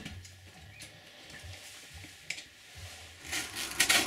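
Faint handling noises, then from about three seconds in a run of scratchy scraping strokes: a knife blade cutting and trimming the edge of a cured foam kayak-seat blank.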